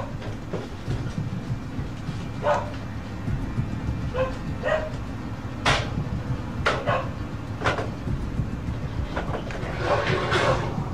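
A series of short, sharp knocks and clicks at irregular intervals, about ten in all, over a steady low rumble. Some of the knocks have a brief pitched tail.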